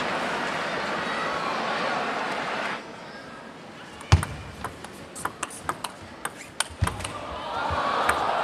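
Arena crowd noise that cuts off about three seconds in, then a table tennis rally: the plastic ball clicking sharply off the rackets and the table in quick alternation, two or three clicks a second, the first hit heavier.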